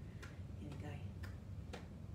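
Hand claps keeping a steady beat, about two a second, four claps in all, as a count-in before a sung children's song.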